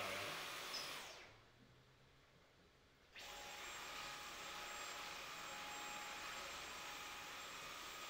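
Cordless stick vacuum winding down and going quiet about a second in, then switching on abruptly just after three seconds and running steadily with a faint whine over its airflow hiss.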